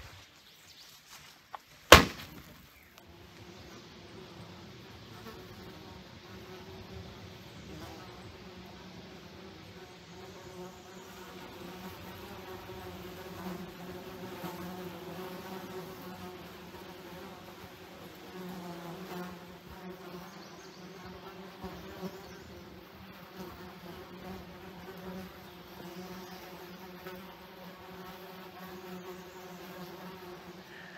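Horse flies buzzing around the camp, a steady drone of overlapping wingbeats that swells and fades as they fly close to the microphone. A single sharp snap about two seconds in, just before the buzzing sets in.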